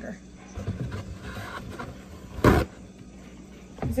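A sheet of paper towel torn off a roll: one short, sharp rip about two and a half seconds in.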